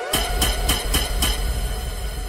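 DJ mix outro sound effect: a held electronic tone with many overtones over deep bass. Five evenly spaced hits, about three or four a second, come in just after the start.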